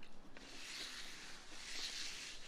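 Faint, even background hiss with no distinct event.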